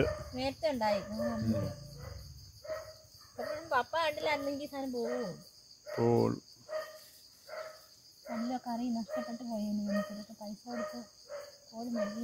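People talking in short, broken phrases over a steady high chirring of insects.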